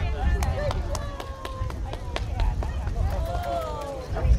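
Voices of passing people chatting, over a steady low rumble, with a few sharp clicks.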